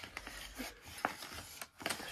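Small pocket knife cutting open a plastic blister pack: faint scraping with a few light clicks.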